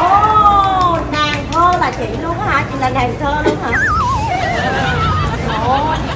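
Several excited high-pitched voices calling out without clear words, some sliding up and down and some with a wavering pitch, over a low crowd murmur.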